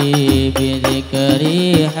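Hadroh music: rebana frame drums beating a steady rhythm with low bass notes under a held, wavering sung melody of a devotional shalawat.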